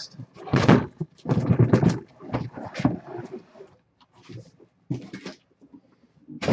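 A cardboard shipping case and the shrink-wrapped boxes inside it being handled and slid out: a string of irregular scraping and rustling bursts, thinning out after about four seconds.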